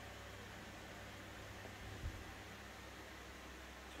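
Faint, steady low hum under a light hiss, with one soft low thump about two seconds in.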